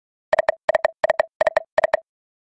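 Online slot game's electronic reel sound effect: short beeps of one pitch in quick clusters of two or three, about three clusters a second, starting about a third of a second in.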